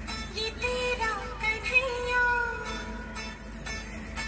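Recorded song playing: a sung melody of long held notes that bend slightly, over a light instrumental backing.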